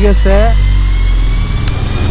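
A motorcycle engine running steadily at low speed on a rough dirt track, heard as a deep, even rumble.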